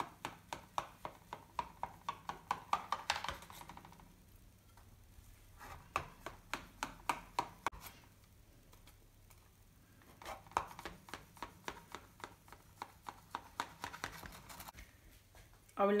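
Knife sawing through baked sponge cake in a metal baking tin: a run of quick clicks, about four to five a second, in three spells with short pauses between.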